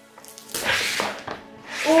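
Handling noise from a large hollow plastic toy egg being gripped and shifted: two short rough rubbing rustles, over faint background music at the start.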